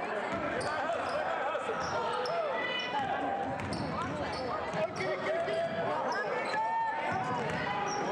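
Basketball being dribbled on a hardwood gym floor, with short sneaker squeaks and the overlapping voices of spectators and players.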